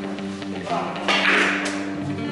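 Background guitar music, with the sharp clacks of a cue striking the cue ball and billiard balls colliding about a second in.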